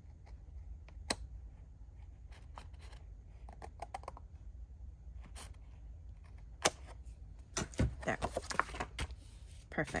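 Scissors trimming a thin strip off the edge of cardstock: small, scattered snips and blade clicks, with a sharper click about two-thirds of the way through and paper handling near the end.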